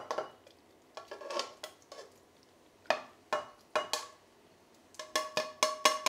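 Metal tongs knocking and scraping against a frying pan and a glass blender jug as food is tipped in: scattered light clinks with a short ring, then a quick run of clinks near the end.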